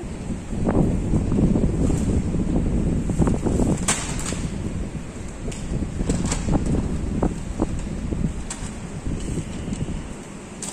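Low rumbling wind and handling noise on a handheld phone microphone as it is carried along. It starts suddenly and runs with scattered clicks and knocks.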